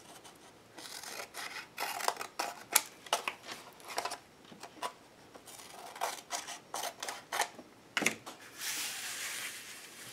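Scissors snipping through thin book-page paper in a run of short, irregular cuts, trimming the paper's corners. Near the end comes a second or two of steady paper rubbing and rustling.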